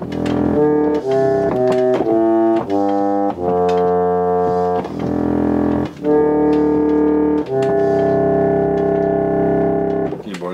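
Packard reed organ (foot-pumped pump organ) playing chords: a quick run of short chords over the first few seconds, then longer held chords, the last one sustained to the end.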